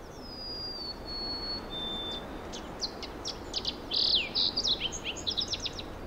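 Birds singing over a steady background of ambient noise. A few long whistled notes come first, then a quick run of sharp chirps in the second half, loudest about four seconds in.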